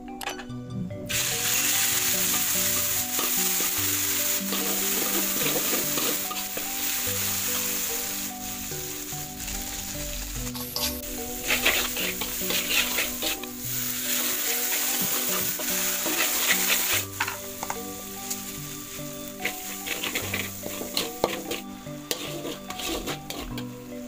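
Red chilli spice paste frying in oil in a large wok: a steady sizzle starts about a second in, while a spatula stirs and scrapes against the pan. The sizzle eases about two-thirds of the way through, leaving softer frying and spatula scrapes and taps.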